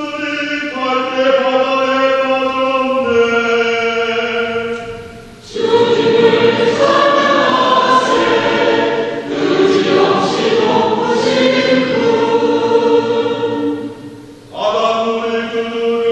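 Church choir singing a Korean responsorial psalm (the Gradual): one sung line for the first five seconds or so, then the full choir in several parts, easing off briefly near the end before the single line comes back.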